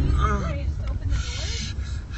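A person's voice making a short wavering sound, then a hiss starting about a second in, over the steady low rumble of a car interior.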